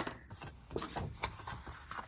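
Faint rustle and a few light ticks of a sheet of thick white cardstock being handled and slid across a craft mat.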